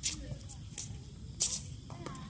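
Faint, distant talk among players, with three short sharp hisses; the loudest comes about one and a half seconds in.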